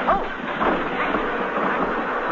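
Studio audience laughing, many people at once in a long, steady swell of laughter at the piano gag.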